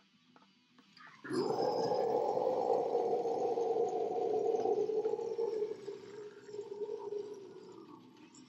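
Death metal guttural vocal growl: one long, low growl that starts suddenly about a second in, is held for about six seconds, and fades near the end.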